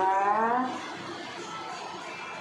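A woman's voice holding a drawn-out, rising sound for about the first half-second, then only quiet room sound.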